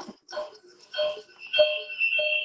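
Ringing electronic tones that repeat about every half second, with a high steady whistle building in the second half: audio feedback from a video call playing on a computer and a phone at the same time.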